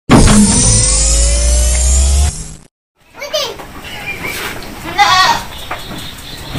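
A short electronic intro sound with rising tones over a deep hum, cut off about two and a half seconds in. After a brief silence, a Senduro goat kid bleats with a quavering call about five seconds in, among low voices.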